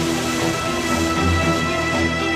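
Background music: held chords over a steady low bass.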